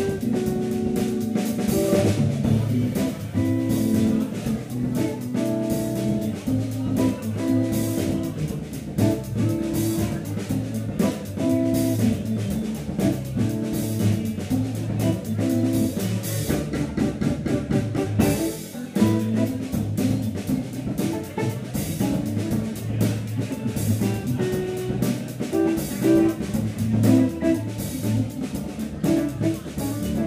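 Live instrumental organ-trio jazz groove: Hammond organ, electric archtop guitar and drum kit playing together, with cymbals ringing over the chords and melody lines.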